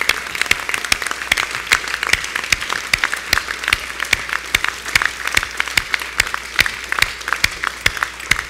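A room full of people applauding, with sharp individual hand claps standing out over the general clapping.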